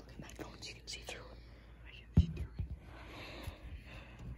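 Faint whispering, with one sharp knock about two seconds in.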